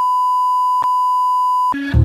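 Steady single-pitch electronic test tone, the beep that goes with TV colour bars, with a short click a little under a second in. It cuts off near the end as music comes in.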